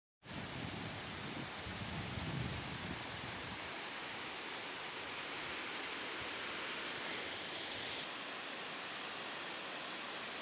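A fast, shallow mountain river rushing over a stony bed in a steady hiss of white water. Wind buffets the microphone with a low rumble in the first few seconds.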